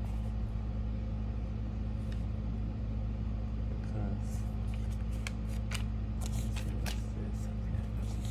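A steady low hum runs throughout. Papers and envelopes rustle and click as they are handled, most busily between about four and seven seconds in.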